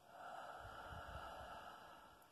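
A person's slow, deep breath, faint, lasting most of two seconds, with a few soft low bumps in the middle.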